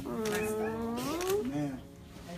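A person's drawn-out wordless vocal cry, held and rising slightly in pitch for about a second and a half, followed by a short second rise-and-fall call.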